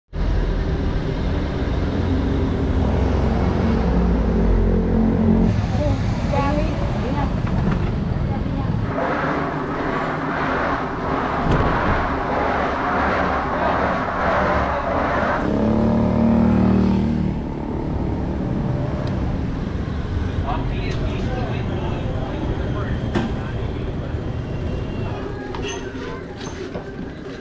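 City street ambience in a run of short clips. It opens with a vehicle engine running close by, then moves to traffic noise and people's voices, with scattered sharp knocks near the end.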